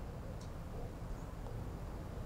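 Faint steady low background rumble: a quiet pause with the guitar silent.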